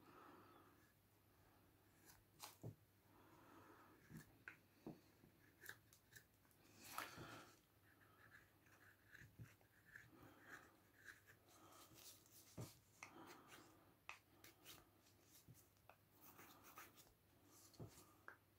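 Faint carving-knife strokes on a wooden spoon blank: irregular short slicing and scraping cuts as the edges are bevelled, with one longer shaving cut about seven seconds in.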